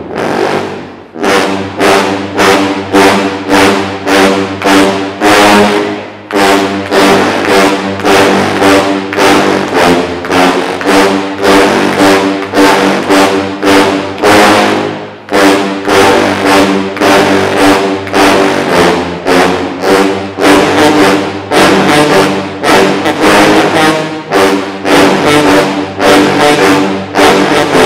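A dozen sousaphones playing together: a driving rhythm of short, punchy low brass notes, about two a second, with a few brief pauses between phrases.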